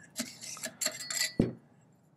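Metal sliding, scraping and clicking as the Gilboa Snake's twin-pronged "tuning fork" charging handle is drawn out of the rifle's double-width upper receiver, ending in a dull knock about one and a half seconds in.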